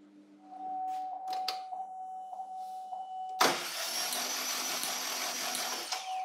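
Starter motor cranking the engine for about two and a half seconds from a little past the middle, the engine turning over without firing because the fuel injectors are unplugged, during a spark test of the ignition module's third-cylinder output. A steady high electronic tone sounds from about half a second in.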